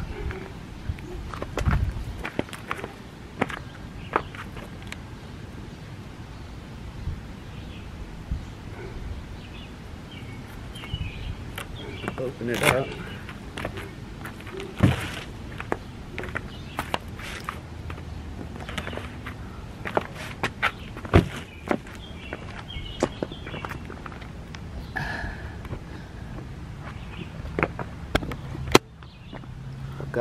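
Footsteps in flip-flops on pavement, mixed with scattered clicks and knocks from a cable and plug being handled. A sharp click near the end comes as the SAE connector is plugged into the solar panel's lead.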